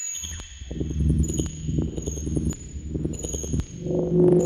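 Verbos Electronics Composition System modular synthesizer playing an ambient patch through an Eventide Space reverb: low, pulsing tones under a thin high whistle that cuts in and out, with a few sharp clicks. A brighter, steadier mid tone swells in near the end.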